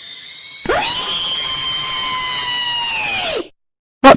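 A high, flat whine that sweeps up sharply about half a second in, holds one pitch for nearly three seconds, then sweeps down and stops. A fainter steady hiss with thin tones builds up before it.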